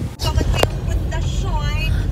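Steady low rumble of a car heard from inside its cabin, cutting in suddenly just after the start, with a single sharp click a little over half a second in.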